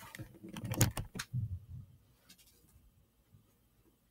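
Handling noise as the handheld camera is swung around: a quick run of light clicks and soft knocks over the first two seconds, then near quiet.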